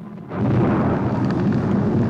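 Explosion sound effect from a 1960s TV soundtrack: a blast that starts suddenly about half a second in and carries on as a heavy rumble.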